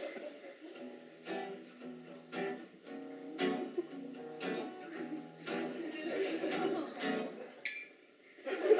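Acoustic guitars strumming chords, about one strum a second, as audience laughter dies away at the start.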